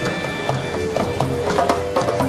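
Live Middle Eastern-style dance music: a hand drum struck in a quick, uneven rhythm, several hits a second, under a wind instrument holding pitched notes.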